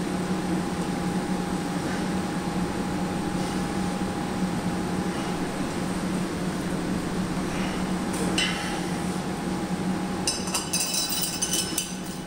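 A steady hum in the gym runs throughout. Near the end comes a quick run of metallic clinks: the dip-belt chain and iron weight plates knocking together as the lifter comes down from the bar with the weight still hanging from his waist.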